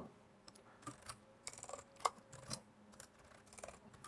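Faint, irregular keystrokes on a computer keyboard: someone typing a line of code, with a few short clicks at a time.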